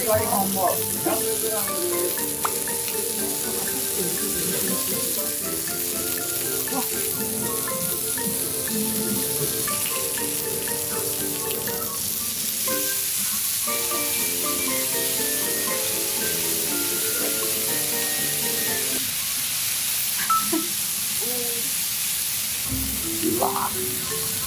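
Beef hamburg steaks sizzling steadily on a hot iron serving plate as sauce is spooned over them. Light background music plays over most of it and stops a few seconds before the end.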